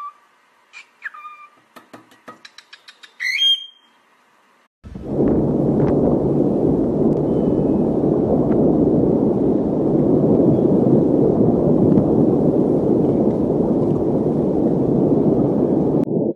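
A cockatiel gives short whistles, a quick run of clicks and a rising whistle. About five seconds in, a loud, steady rush of wind on the microphone takes over and runs on.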